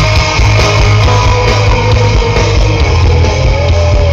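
Melodic death metal band playing live at full volume: distorted electric guitars, bass and drums, with a held melody note riding above the dense low end.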